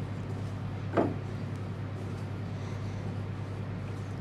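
A silicone spatula stirring a dry, crumbly almond-flour dough in a ceramic bowl, soft scraping over a steady low hum.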